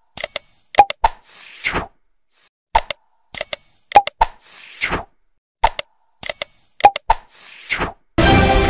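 Like-and-subscribe animation sound effects: sharp clicks, a pop and a bell-like ding, then a short hiss. The group plays three times, about three seconds apart.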